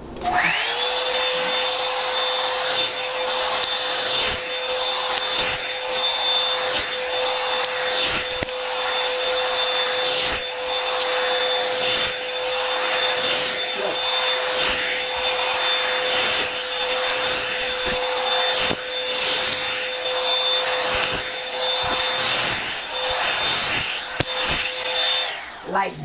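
Revlon One-Step hot air brush running: its motor whines up to speed at the start, holds a steady high whine with rushing air, and winds down just before the end. Over it, repeated irregular strokes of the brush being dragged through the wig's tangled roots to detangle them.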